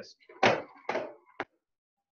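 Double practice nunchucks swung in three fast snap strikes and caught back each time: three quick knocks about half a second apart, the first the loudest.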